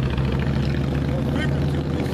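Steady low rumble of vehicle engines from road traffic, with a short voice-like sound about one and a half seconds in.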